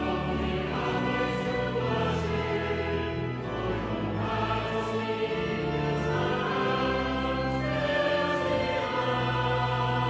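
Choir singing in a cathedral's long reverberant acoustic, over sustained low organ notes.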